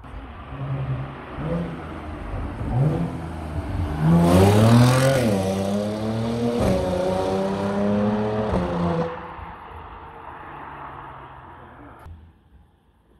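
Audi S5's 3.0 TFSI V6 running through a home-made custom exhaust with an X-pipe, accelerating hard past and away. Its note climbs, is loudest about four to five seconds in, drops and climbs again twice as it shifts up, and fades after about nine seconds.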